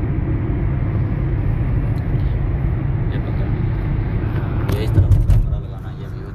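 Steady low road and engine rumble of a moving car, heard from inside the cabin. About five seconds in come a few sharp knocks, and then the rumble drops.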